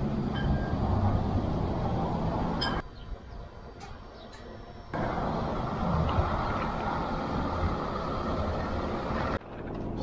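Steady road and engine rumble inside a moving vehicle's cab. It drops suddenly to a much quieter stretch from about 3 to 5 seconds, then returns, and dips briefly again near the end.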